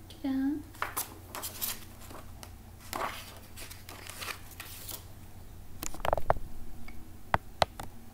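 A large hardcover book being handled: paper and cover rustling and sliding as the cover is opened and the pages shown, with a louder burst of handling about six seconds in and two sharp clicks near the end. A brief voiced hum right at the start.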